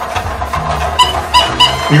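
Battery-powered duck-matching game toy running: its small motor hums low while the toy plays a short electronic tune of beeping notes.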